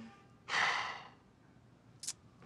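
A person's breathy sigh: one exhale about half a second in, fading out over half a second.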